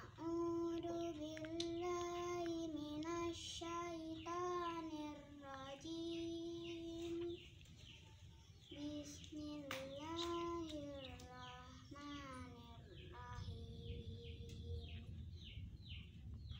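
A young girl chanting a Qur'an recitation from memory in melodic phrases with long held notes, pausing briefly about halfway through.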